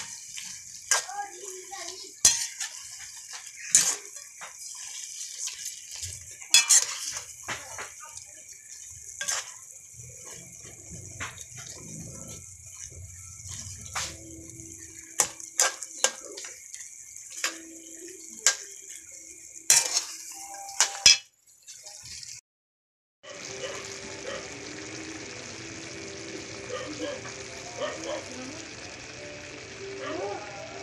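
A metal spatula clinking and scraping against a stone-coated wok in sharp, irregular knocks while chicken and tomatoes sizzle underneath. After a brief break past two-thirds of the way, the clinking stops and the dish simmers with a steady sizzle.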